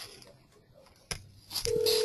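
A click about a second in, then a short steady telephone-like tone with a hiss over it, lasting about half a second, near the end.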